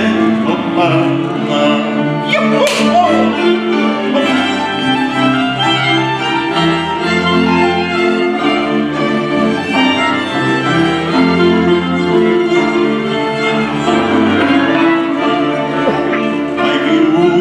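Cimbalom band playing an instrumental passage of Horňácko folk music: violins leading over cimbalom and lower bowed strings, between the singer's verses.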